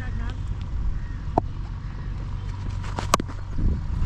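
Low, steady rumble of wind on a helmet-mounted action camera's microphone, with faint distant voices and one sharp click about three seconds in.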